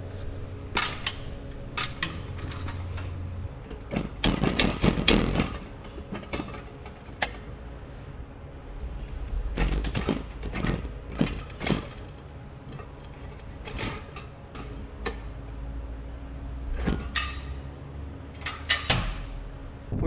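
Galvanized steel calf-pen gates being handled and swung open: repeated metal clanks, knocks and rattles, in clusters about four seconds in, near the middle and near the end. A steady low engine hum runs underneath.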